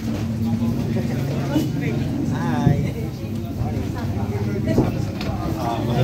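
Indistinct talk and murmur from people nearby during a microphone handover, over a steady low hum.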